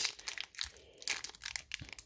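Foil wrapper of a Magic: The Gathering booster pack crinkling in irregular crackles as fingers handle and pinch it, looking for a place to tear it open.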